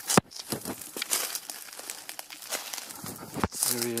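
Footsteps crunching and rustling through dry brush and leaf litter, an uneven run of crackles, with two sharp clicks, one just after the start and one shortly before the end.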